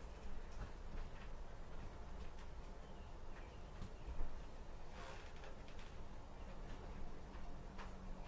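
Faint kitchen handling sounds: a cotton tea towel being picked up and shaken out, with a soft knock about four seconds in and a brief cloth rustle just after, over a low steady room hum.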